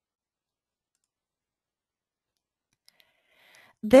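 Near silence, then two faint mouse clicks close together about three seconds in.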